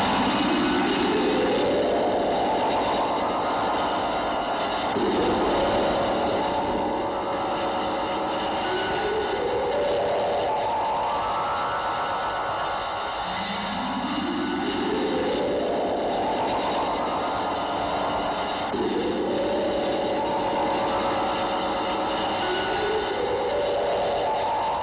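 Film sound effect of overlapping rising tones over a steady rushing noise, a new rise starting every few seconds and each climbing in pitch for about four to five seconds.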